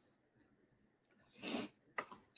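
A person's single short, sharp burst of breath, sneeze-like, about a second and a half in, followed by a brief click at the very end.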